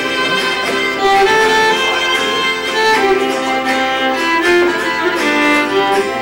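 Fiddle bowed in a folk tune: a running melody of held notes, changing pitch every fraction of a second.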